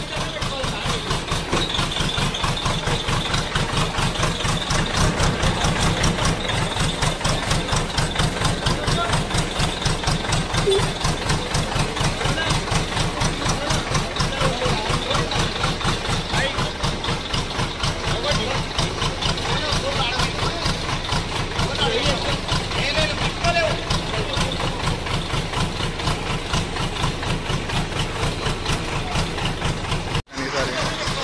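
Diesel engine of a backhoe loader idling, with an even, rhythmic beat of low pulses.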